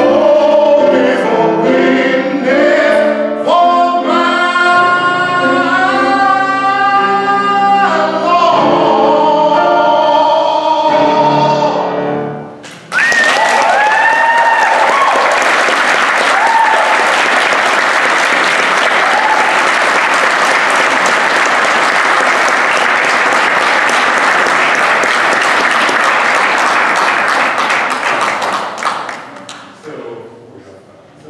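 A man singing with piano accompaniment ends a song on long held notes. After a brief pause, about sixteen seconds of audience applause follow, with a few cheers at the start, fading out near the end.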